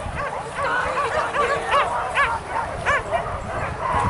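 Hunting dogs on a wild boar hunt yelping in short, high, rising-and-falling cries, about three a second, without a break.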